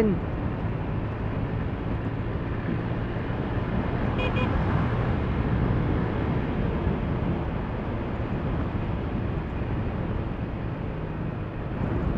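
Motor scooter engine running steadily at cruising speed, mixed with road and wind noise at the on-board microphone.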